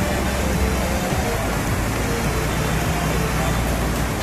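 White water pouring over a low stone weir and rushing through rocky shallows: a loud, steady rush of waterfall noise.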